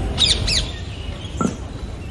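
A bird chirping: two quick high chirps that fall in pitch, close together about a quarter and half a second in, over a steady low outdoor rumble.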